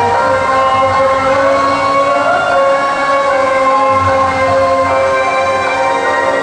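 Loud yosakoi dance music accompanying the dancers, with long held notes.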